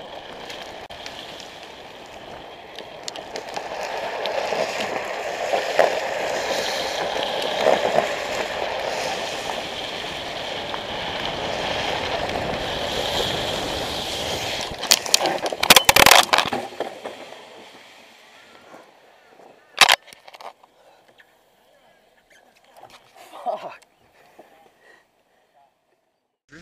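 Huffy Slider drift trike rolling down wet asphalt, with steady wheel and road noise and wind on the microphone that builds over the first few seconds. About 15 seconds in comes a burst of loud knocks and scraping. After that the sound drops to much quieter, with a few isolated knocks.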